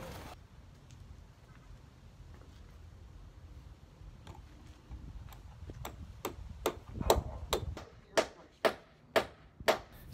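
Hammer driving nails through a metal bracket into a wooden frame: a run of sharp, separate strikes, about two a second, starting a few seconds in and getting louder near the end.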